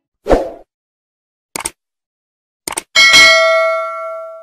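Subscribe-button animation sound effects: a thump about a quarter second in, two short double clicks, then a bell-like ding about three seconds in that rings on with several clear tones.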